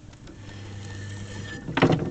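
Electric potter's wheel motor humming steadily for about a second, then stopping, followed by a short loud thud near the end as the freshly thrown pot is worked free at its base.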